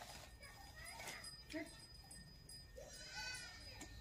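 Faint goat bleating, with the clearest call about three seconds in.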